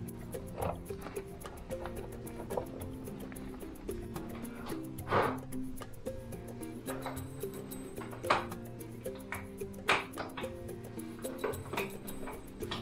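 Background music with a steady run of low notes, with a few short sharp noises over it, the loudest about five, eight and ten seconds in.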